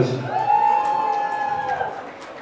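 One long, high cheer from a single voice in the crowd, held steady for about a second and a half, answering a call to make some noise.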